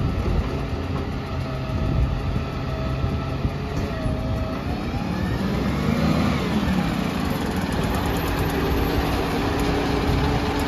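Volvo recycling truck's diesel engine running as the truck creeps forward, a steady rumble. A pitched whine rises and falls about six seconds in, and steady humming tones join near the end.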